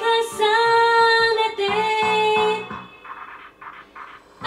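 A woman singing a Japanese pop ballad over a karaoke backing track, holding long notes. The voice breaks off about two and a half seconds in, leaving a quieter stretch near the end.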